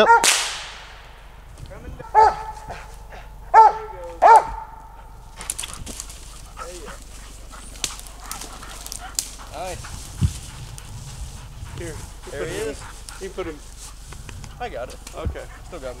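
A single gunshot at the start with a long echoing tail, then a squirrel dog barks about three times a couple of seconds later, the last bark drawn out. After that, crackling steps through dry leaves and pine straw with a few more faint dog sounds.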